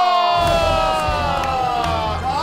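Onlookers shouting and cheering, with long held shouts that slowly fall in pitch; a low rumble comes in about half a second in.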